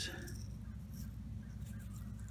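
Quiet background with a faint steady low hum and no distinct sound event.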